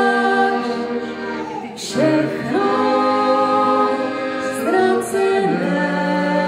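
A man and a woman singing a song together in long held notes, accompanied by a piano accordion. There is a brief break near two seconds in, and the pitch steps to new notes about two and five seconds in.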